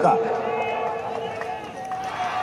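A man's amplified voice through a public-address system finishes a word, then the loudspeakers' echo and a steady ringing tone fade away over about two seconds.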